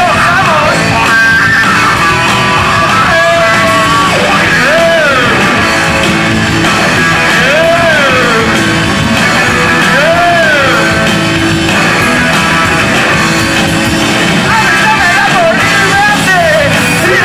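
Live rock band playing loudly: distorted electric guitars, bass and drums, with a melody line that swoops up and down in arcs every two to three seconds.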